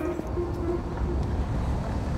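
City street ambience: a steady low rumble of traffic.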